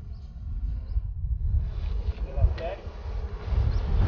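Wind buffeting the microphone: an uneven, low rush of noise, with faint voices in the background.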